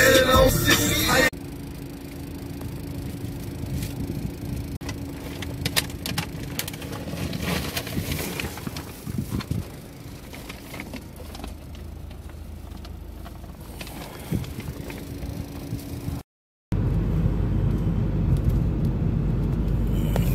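Hip-hop music with rapping cuts off about a second in. Plastic bread-bag crinkling follows, over a low steady hum. After a brief dropout near the end, steady car road and engine noise is heard inside the cabin.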